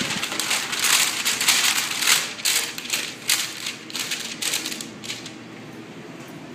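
Stiff waterproof paper bowl liner for an Incinolet incinerating toilet rustling and crinkling as it is pushed into the steel bowl. The crinkling dies down about five seconds in.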